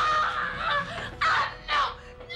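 A woman screaming in rage while wrestling with a man: one long scream, then two short cries.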